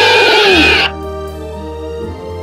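Animated Tyrannosaurus rex roar sound effect: a long, loud roar that falls in pitch and ends about a second in, over background music that then carries on alone.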